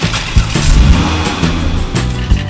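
A car-engine sound effect as a toy car drives off, laid over background music with a steady low beat.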